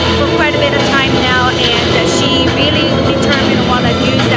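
A woman speaking over loud background music, with a steady low hum underneath.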